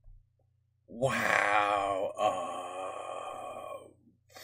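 A man's long, drawn-out vocal groan with a wavering pitch, starting about a second in and lasting some three seconds with a brief break in the middle.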